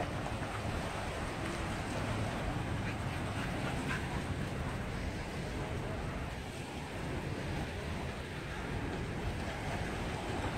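Steady wind noise on the microphone, with small river waves washing onto a sandy shore.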